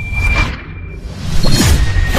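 Whoosh sound effects of an animated logo transition: a swoosh about a quarter second in, then a louder one about one and a half seconds in that carries on, over a thin steady high tone.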